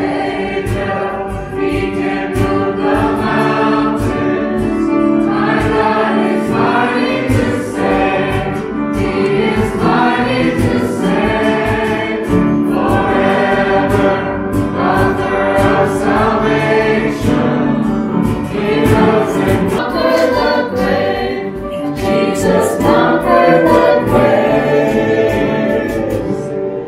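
Church congregation singing a hymn together, many voices at once.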